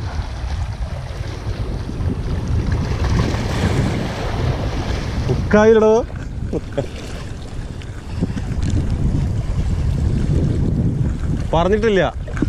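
Wind buffeting the microphone over small waves washing against shoreline rocks, a steady low rumble. A short voice sound breaks in about halfway through and again near the end.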